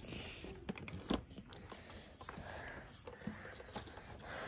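Soft breathing and sniffing close to the microphone, with a few light handling clicks and knocks, the loudest about a second in.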